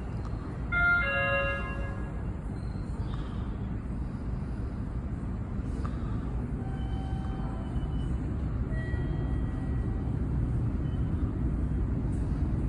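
Low rumble of an approaching Sapporo subway Namboku Line train, a rubber-tyred metro, in the tunnel, growing slowly louder as it nears the platform. About a second in, a short electronic chime of several notes sounds.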